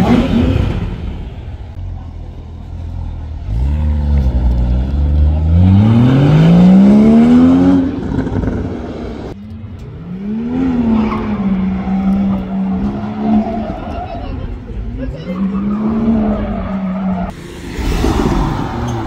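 Porsche Boxster engine revving hard as the car accelerates away, its pitch climbing steadily for about four seconds. After a sudden break, a car engine holds a steady high drone at high revs, with short dips.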